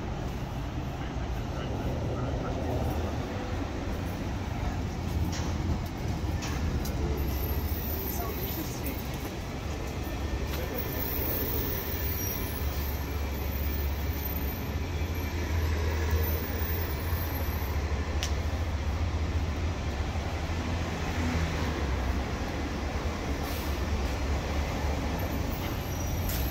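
City street traffic: a steady low rumble of vehicles passing along a busy downtown avenue.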